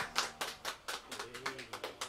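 Sparse applause: a few people clapping, separate claps several times a second at an uneven pace.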